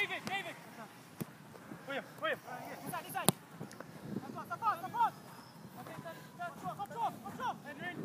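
Faint, distant boys' voices calling across an open football pitch during play, with a few sharp knocks, the loudest a little after three seconds in.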